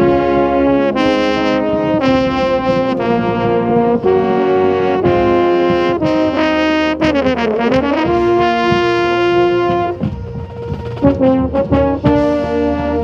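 A drum corps brass line playing, with a marching baritone held close to the microphone: held notes that change about every second. About seven seconds in, the pitch slides down and back up. Just after ten seconds the playing briefly thins, and then shorter notes follow.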